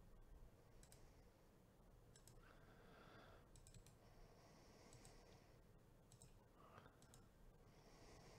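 Near silence with faint computer mouse and keyboard clicks, coming in small clusters every second or so.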